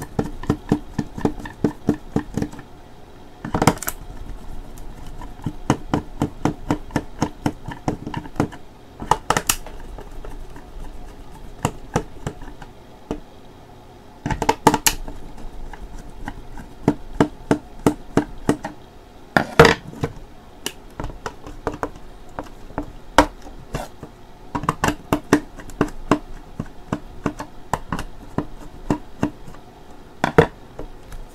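Long Phillips screwdriver turning screws out of the plastic casing of an Omron nebulizer compressor: quick runs of small clicks and ticks as the bit works in the screw head, with a few louder knocks spread through.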